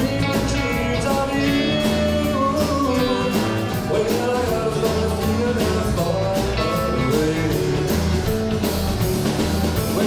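Live early-1960s-style rock and roll band playing a song: electric guitars, bass guitar and drum kit with a male lead vocal.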